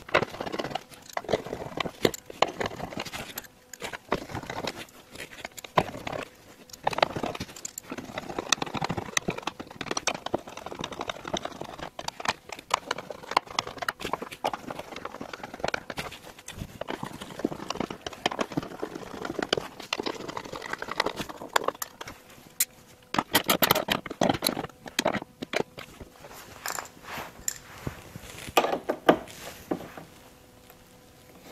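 Hand work on a loosened carbon-fibre side splitter under a car: irregular clicks, rattles and scraping of the panel and its screws, with stretches of rustling as masking tape is pulled out from behind it. The clicks come thickest about two thirds of the way through and again near the end.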